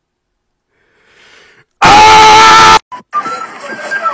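A sudden, very loud, distorted blast about a second long, clipped at full volume, with a shrill tone running through it. A little after it stops, a pipe tune begins.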